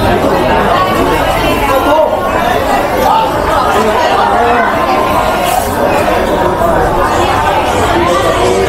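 Chatter of people talking at a busy market: several voices overlapping at once in a continuous, fairly loud babble.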